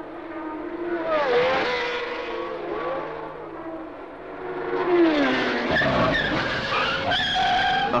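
Formula One race cars going by at speed, the engine note dropping in pitch as cars pass, twice. Near the end there is a tyre squeal as a car spins with its tyres smoking.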